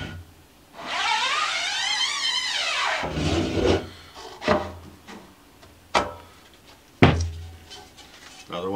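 Wooden-framed screen-printing screen being handled: a squeaky rubbing scrape that rises and then falls in pitch over about two seconds, followed by a few sharp wooden knocks.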